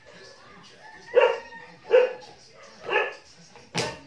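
A dog barking three times, about a second apart, followed by a sharp click near the end.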